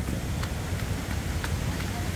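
Footsteps on a wet cobblestone track, a few faint scuffs and knocks, over a steady low rumble.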